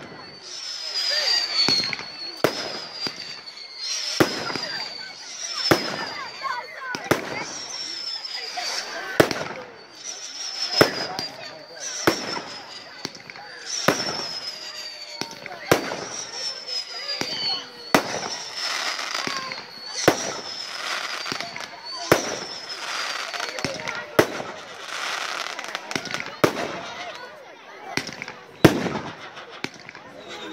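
Fireworks firing in a steady sequence, one sharp report about every one and a half to two seconds as single shells launch and burst. A thin whistle, falling slightly in pitch, follows many of the shots.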